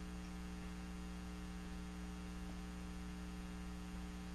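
Steady electrical mains hum with a faint hiss on the recording, unchanging throughout.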